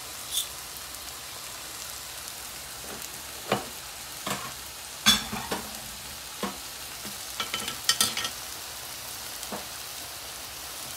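Tilapia fillets and chopped peppers sizzling in a frying pan, a steady hiss. Scattered sharp clicks and knocks break in, the loudest about halfway through and a quick cluster near the end.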